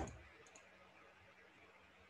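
Near silence with the fading end of a brief noise at the very start, then a pair of faint clicks about half a second in.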